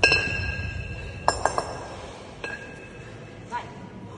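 Pair of 14 kg kettlebells knocking together during a long-cycle rep, each knock a ringing metallic clink. The loudest comes right at the start as the bells come down from overhead, a quick cluster follows about a second and a half in, and a weaker one comes about two and a half seconds in.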